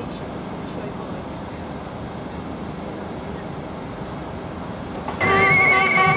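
Steady murmur of a marching crowd, with indistinct voices. About five seconds in, a loud pitched sound that wavers in pitch cuts in suddenly, as music and crowd noise rise.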